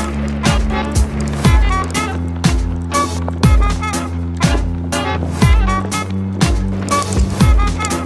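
Background music with a steady beat: a deep kick drum about once a second over sustained bass notes and quick higher notes.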